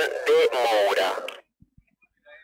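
Commentator speaking in Spanish over a live-stream microphone, breaking off about three-quarters of the way through into dead silence.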